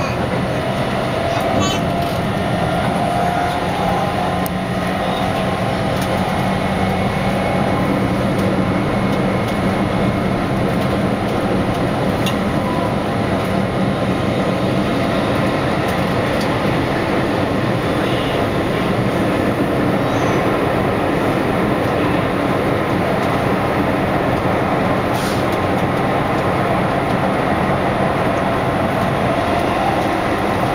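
Keihan limited express electric train running along the line, heard from inside the front cab: a steady rumble of wheels on rail with a low, even hum.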